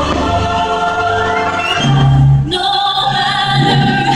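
Fireworks show soundtrack: choir singing long held notes over an orchestral backing, changing to a brighter passage about two and a half seconds in.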